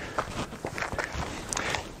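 Footsteps and shoe scuffs on sandy, gravelly dirt as a person steps in and crouches down: a run of irregular short scrapes and taps.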